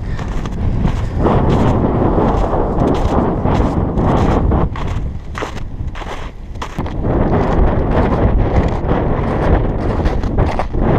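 Wind buffeting the camera microphone in gusts, louder from about a second in and again in the last few seconds, easing off around the middle. Under it, footsteps crunch on crusted snow and ice.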